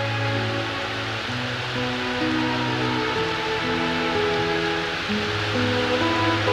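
Slow background music of long held notes that change about once a second, over a steady hiss of heavy rain.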